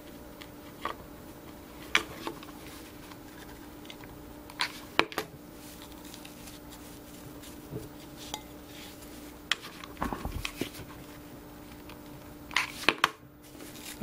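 Scattered light knocks and clinks of a glass vase being handled on the table while rope is pressed and wound onto it, over a faint steady hum.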